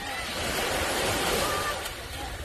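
A small wave washing up the beach and breaking in the shallows: a hissing surge of surf that builds for about a second and a half, then eases off.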